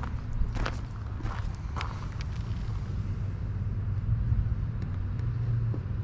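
Footsteps crunching on gravel, a few irregular steps early on, over a steady low vehicle engine hum.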